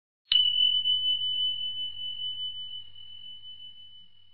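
A single bell-like chime struck once, a clear high tone that rings on and fades slowly, wavering slightly as it dies away. It is a quiz sound effect marking that the time to answer is up.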